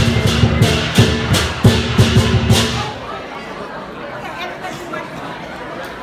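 Lion-dance drum and clashing cymbals beating out a loud, steady rhythm that stops about three seconds in, leaving crowd chatter in a large hall.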